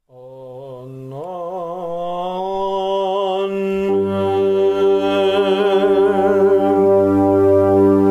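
Greek Orthodox Byzantine chant: a voice holds a long melismatic vowel, its pitch wavering through ornaments, growing louder. About four seconds in, a low steady drone (the ison) comes in beneath it.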